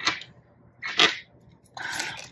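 Tarot cards being handled on a wooden table: three short papery swishes as cards are slid and drawn from the deck, one at the start, one about a second in, and one near the end.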